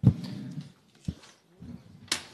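A desk microphone is switched on with a sharp thump, followed by a short low vocal sound from the man about to speak. A single click comes about a second in, and another brief low sound near the end.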